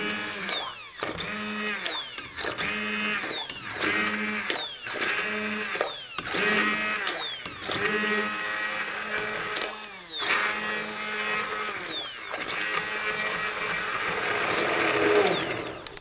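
Handheld stick blender puréeing cooked tomato and vegetables in a steel pot. The motor runs in short pulses, each winding down in pitch as it is let off, then in longer runs that are loudest near the end before it cuts off.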